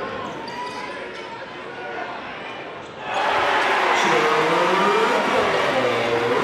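Basketball being dribbled on a hardwood gym floor, short bounces over crowd voices that get louder about halfway through.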